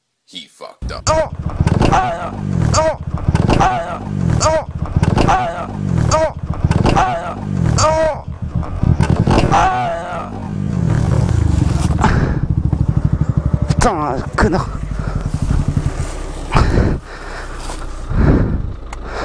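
Yamaha MT motorcycle engine being revved in repeated blips, each rising and falling in pitch about once a second, as the bike is wedged between a car and the roadside brush. It then runs more steadily, with a few knocks as the bike goes over into the bushes.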